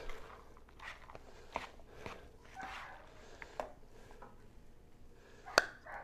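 A metal spoon stirring cooked elbow macaroni in a plastic bowl, giving soft, scattered clicks and scrapes, with a sharper knock near the end.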